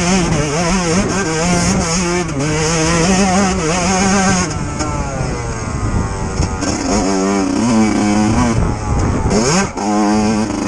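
Yamaha YZ125 two-stroke dirt bike engine under load, its revs rising and falling as the throttle is worked. The revs drop off about halfway through, then climb again with quick dips and rises near the end.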